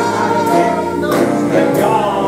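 Big band swing music with a male vocalist singing into a microphone over the band's accompaniment.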